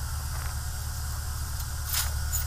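Steady low hum under an even hiss, with a couple of faint clicks from a phone's display assembly being handled, about half a second in and again near the end.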